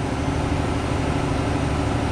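Steady drone of machinery running in a superyacht's engine room: a continuous low hum under an even hiss, unchanging throughout.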